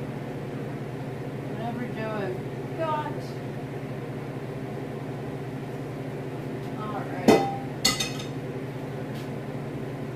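Two sharp metallic clinks of kitchenware set down on a countertop, about a second apart past the middle, over a steady low hum.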